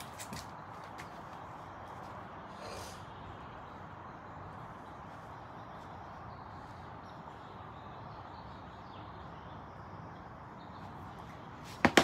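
Steady faint outdoor background noise, then near the end a single sharp click of a golf club striking a ball on a chip shot.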